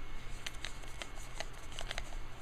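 A run of light, irregular clicks and ticks as fingers handle a small white plastic grooming-product sample, with the ticks coming closer together in the second half.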